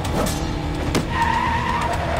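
Motorcycle chase sound effects from an action film: engine noise with a falling pass-by just after the start, then a high, steady tyre squeal a little past halfway.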